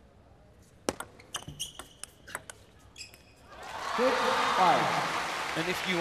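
Table tennis rally: a quick run of sharp clicks as the ball strikes the bats and the table, with a few high shoe squeaks, lasting about two seconds. The point then ends and the crowd breaks into loud cheering and applause from about halfway through.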